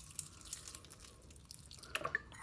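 Lime juice squirted from a plastic squeeze bottle onto cooked rice, heard faintly as a scatter of small ticks and drips.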